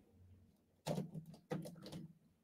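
Someone drinking water through a straw, twice and faintly: short sips and swallows about a second in and again near the end.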